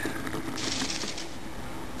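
Bedini SSG-style pulse charger running in solid-state mode: a fast, even ticking from its rotor wheel and pulsing coil circuit. A brief brighter rush comes about half a second in as the spinning wheel is stopped by hand, then a steadier, quieter running sound.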